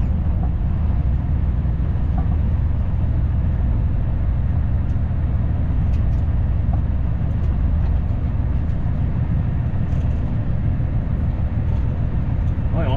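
Vehicle engine running with a steady low drone as it rolls slowly, heard from inside the cab.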